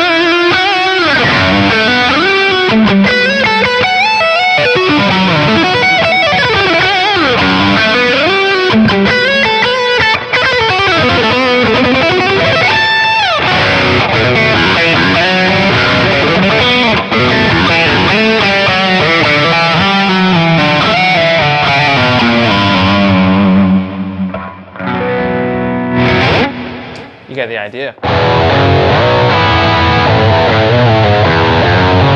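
Overdriven electric guitar lead through a BOSS GT-1000 low-gain patch: fast runs with bends and slides, including one long rising slide near the middle. Towards the end the playing breaks into short separate phrases, and about two seconds before the end it switches to a tighter rhythm tone.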